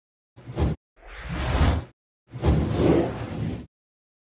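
Three whoosh sound effects of a logo intro animation: a short one, then two longer swells, each cutting off abruptly.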